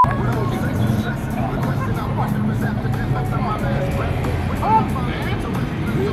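Street ambience of crowd chatter and traffic hum with a song playing underneath, opening with a brief test-tone beep at the very start.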